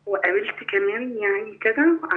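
Speech only: a woman's voice over a telephone line, narrow and thin-sounding, with a steady low hum underneath.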